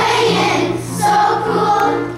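Children's choir singing, holding sustained notes.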